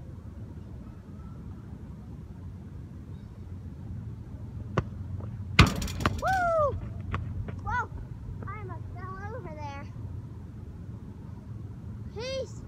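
A soccer ball struck hard once about halfway through, a sharp thud after a lighter tap, over a steady low background rumble. Right after it come several high-pitched vocal exclamations from a child.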